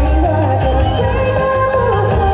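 A girl singing a Taiwanese-language pop song live into a microphone over an amplified backing track with a steady bass beat, holding long wavering notes.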